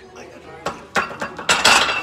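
Loaded barbell clanking into the metal hooks of an incline bench rack: a few sharp metal knocks about a second in, then a louder clatter near the end.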